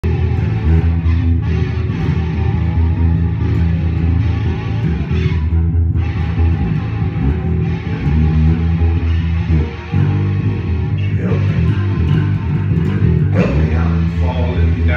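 Live rock band playing the instrumental intro of a song, with a strong bass line under the music and a brief dip in the playing about ten seconds in.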